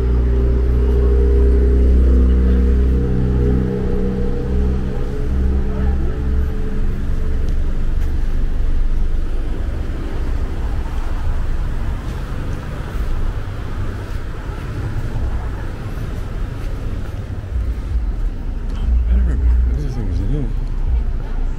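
Street traffic: car engines running at low speed close by, with a low rumble and a steady hum that fades after several seconds, and indistinct voices of people nearby.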